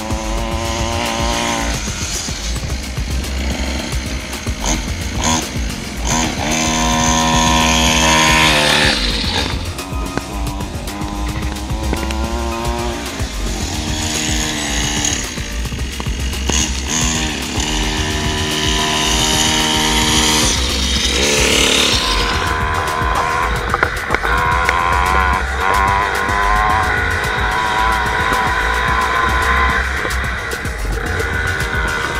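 A 50cc mini dirt bike's small engine buzzing and revving up and dropping back several times as it rides and brakes, with background music playing throughout.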